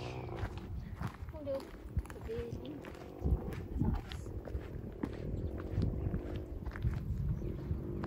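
Wind rumbling unevenly on the microphone, with a few soft footsteps on bare rock and faint voices in the background.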